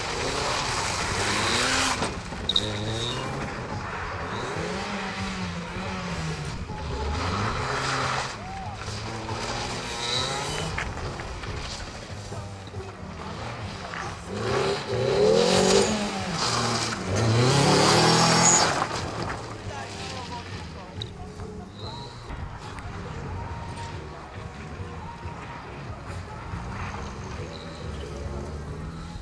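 Car engine revving hard, its pitch rising and falling again and again as the car is driven quickly around a tight course. There are short tyre squeals, and the revving is loudest about halfway through.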